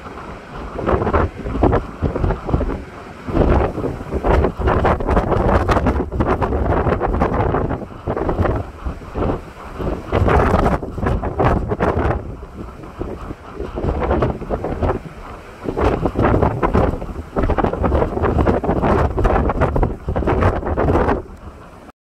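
Strong wind buffeting the microphone in loud, irregular gusts, over the noise of heavy surf breaking on a rock jetty.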